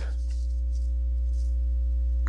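A steady low electrical hum with faint higher tones above it, unbroken through the pause in speech.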